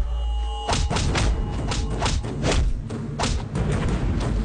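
Film fight-scene sound effects over the action score: a deep boom, then a rapid run of punch and body-hit thuds, about three a second.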